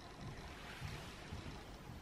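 Faint steady room noise with a few soft low bumps, likely camera handling.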